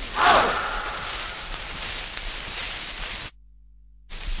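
The closing note of a Latin dance band recording played from a 78 rpm shellac record, fading into the disc's crackle and hiss of surface noise. About three seconds in the sound cuts off suddenly, leaving only a faint hum.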